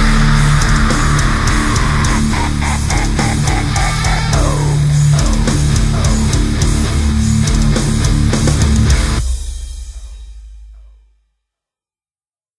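Heavy metal music with distorted electric guitars, playing loudly and stopping abruptly about nine seconds in. A low rumble fades out over the next two seconds, then silence.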